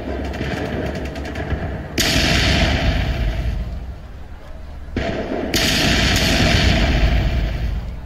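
Staged battle gunfire: a rapid rattle of shots, then two sudden loud blasts, one about two seconds in and one about five seconds in, each dying away over a second or two.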